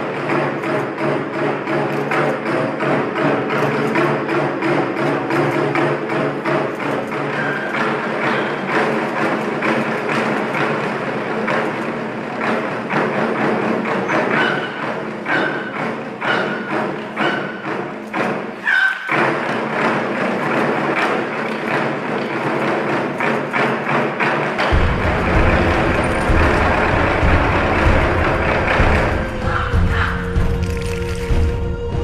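Ensemble of barrel drums struck with sticks in a fast rhythm over pitched backing music, with a brief break just before the twentieth second. A deep bass comes in about five seconds before the end and drives the last part.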